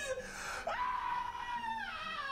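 A high-pitched, drawn-out scream in a man's voice, held for about a second and then falling away.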